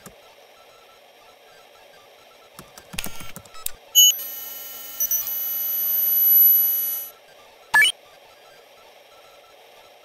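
Computer-style electronic sound effects: a quick run of clicks about three seconds in, then a sharp beep leading into a steady electronic tone of several pitches that swells for about three seconds and cuts off, followed by a short rising sweep near the end, over a faint hiss.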